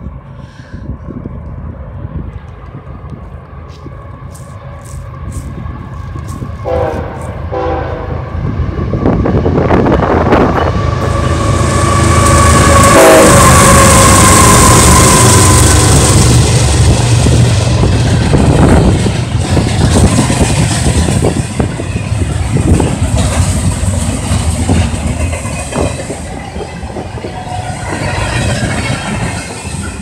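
A diesel-hauled freight train passing close by: the locomotives approach and go past with engine rumble, loudest about twelve to eighteen seconds in, with short horn sounds before and as they pass. Double-stack container well cars then roll by, their wheels clattering over the rail.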